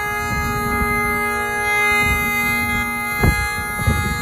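Great Highland bagpipe playing, one chanter note held over the steady drones for the whole stretch. Under it is a low rumble, with a short thump a little past three seconds in.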